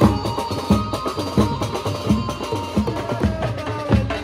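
A Maharashtrian banjo band playing: a keyed banjo melody over bass drum and dhol beats, with a steady strike about every 0.7 seconds.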